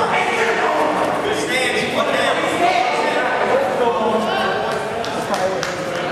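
People's voices talking in a large gymnasium, echoing in the hall.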